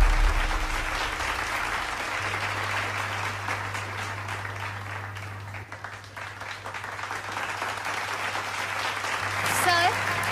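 Audience applauding, a dense patter of many hands that eases off gradually, over a low steady hum. A voice starts speaking near the end.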